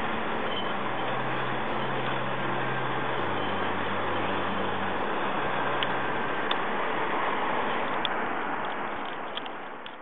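Steady hiss with a low hum underneath for about the first five seconds and a few faint ticks later on, fading out at the very end.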